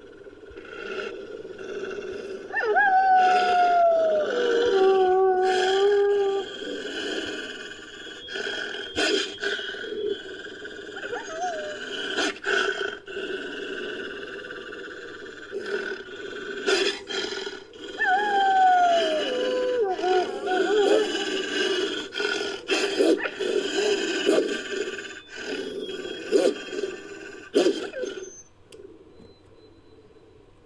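Made-up wolfdog sound effects from a human voice: steady growling, broken by two long cries that fall in pitch, one a few seconds in and one about eighteen seconds in, with scattered sharp clicks. The sounds quieten near the end.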